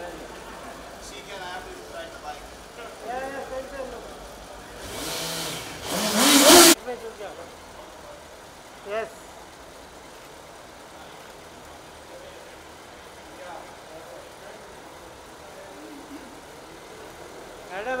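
A loud rushing hiss about five seconds in, swelling and rising in pitch for about two seconds before it cuts off sharply, over faint background voices. A short click follows a couple of seconds later.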